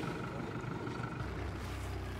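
Boat engine running steadily, a low even hum.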